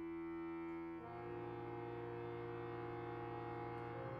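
Chamber music for bayan, violin and cello: a long, steady held chord, with lower notes joining about a second in and sustaining.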